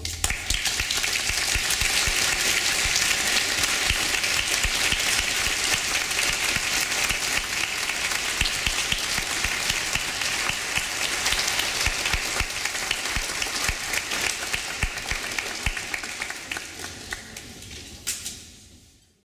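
Audience applauding: dense clapping that begins right as the music ends and dies away near the end.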